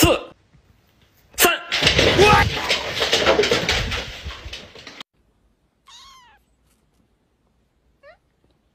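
A sharp click, then about three seconds of loud, noisy commotion as dogs scramble for a treat on a wooden floor; it cuts off abruptly. After a short pause a kitten gives one short, falling mew.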